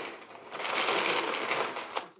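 Mixed coins pouring out of a large plastic water jug onto a wooden table in a dense clinking clatter. The flow eases briefly just after the start, then picks up again.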